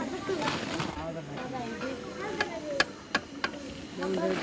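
Background voices talking over the faint sizzle of puris deep-frying in oil in an iron kadhai, with four sharp clicks in the second half.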